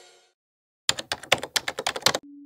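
Rapid typing on a computer keyboard: a quick run of keystrokes, about ten a second, starting about a second in, after the last of the intro music fades out.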